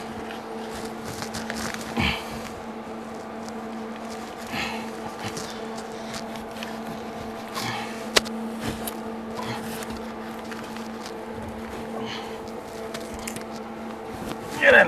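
Fiberglass insulation being pulled from a wall cavity by gloved hands: intermittent rustling and scratching, with one sharp click about eight seconds in, over a steady low hum.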